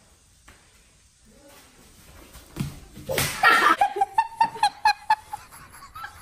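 A foot kicking at a plastic sports-drink bottle in a bottle cap challenge attempt: one loud sharp smack about three seconds in, followed by laughter.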